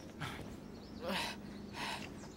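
A cartoon character's breathy gasps of exertion while climbing: three short breaths spread across the two seconds.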